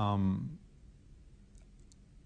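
A man's voice trails off within the first half second, then near silence with a few faint clicks near the end.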